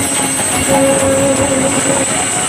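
Live Baul folk music from a stage band, at a long, steady held note; a second note an octave higher joins partway through.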